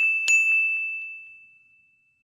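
A bright, single-pitched ding sound effect, the last of a quick run of strikes, sounds again about a quarter second in. Its high ring then fades away over about a second and a half.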